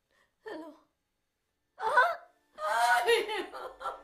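A woman gasping, then breaking into loud anguished wailing and sobbing: a short cry about half a second in, a louder cry near two seconds, then continuous wailing with a wavering pitch.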